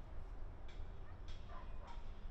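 Faint short animal calls, three of them about 0.6 s apart, over a steady low outdoor rumble.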